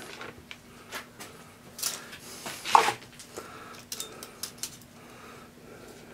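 Handling noise of metal tooling on a metal-topped workbench: scattered light clicks and clinks, with a longer rustle and scrape about halfway through as a steel tape measure is pulled out to measure the shell mill.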